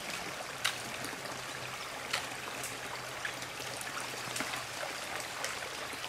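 Steady running water over a flooded trail, with a few faint clicks and snaps of footsteps on sticks and debris.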